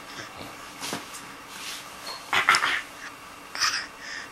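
A baby giving small, breathy coughs on cue: two close together a little over two seconds in, and another short one near the end.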